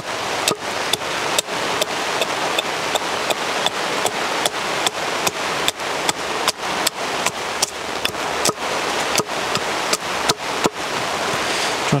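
Small carving axe chopping down the side of an upright green-wood spoon blank on a chopping block: a steady run of sharp strikes, about two to three a second, roughing the handle to shape. A continuous hiss runs underneath.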